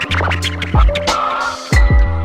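Hip hop beat with a deep steady bass and two kick drums, with a DJ scratching a sample over it on a DJ controller's jog wheel.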